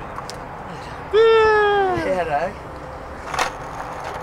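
A person's long, loud yell about a second in, held for nearly a second and falling slowly in pitch, followed by a brief bit of voice. A single short sharp snap comes about three and a half seconds in.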